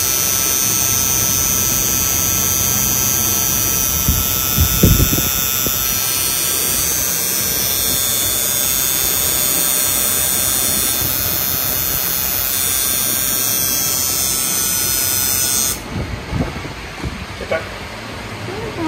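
Electric tattoo machine buzzing steadily as the needle works on skin, with a low thump about five seconds in. The buzz cuts off suddenly near the end.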